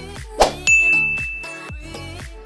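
A bright ding sound effect, one steady high tone held for about a second, comes just after a sharp click-like hit near the start, over background music with a beat.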